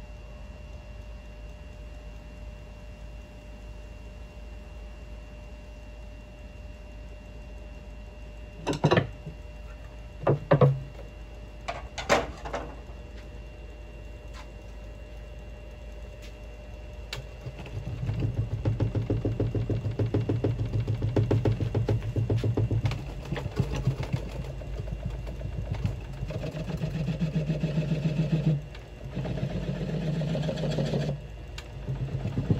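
Wood lathe running slowly with a steady motor hum as it spins a lopsided cedar branch blank. A few sharp knocks come around a third of the way in; then a gouge starts cutting the out-of-round blank, giving a loud rhythmic cutting noise that breaks off briefly near the end.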